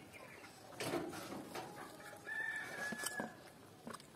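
Close-up eating sounds, wet chewing and lip smacks of rice and curry eaten by hand, with a few small clicks. Behind them a rooster crows once, a single drawn-out call of about a second, a little past the middle.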